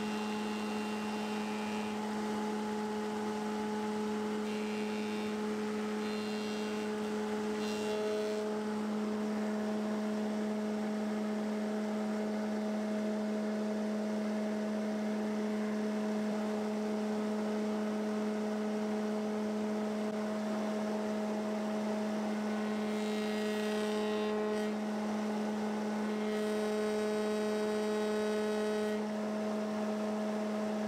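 Spindle moulder running with a steady hum. A few short, higher and hissier stretches rise over it about a quarter of the way in and again near the end.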